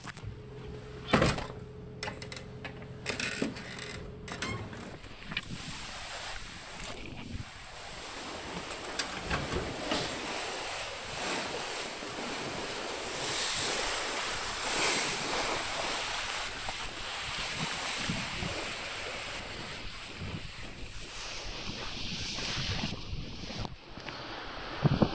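Wind on the microphone and the rush of the sea alongside a ship under way, heard on its open deck as a steady noise. Before that, during the first few seconds, a steady low indoor hum and a few sharp clicks, the loudest about a second in, as the deck door is opened.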